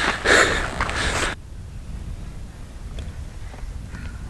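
A man's breathy laughing and heavy breathing close to the microphone, cut off abruptly a little over a second in; after that only a low steady rumble of wind on the microphone.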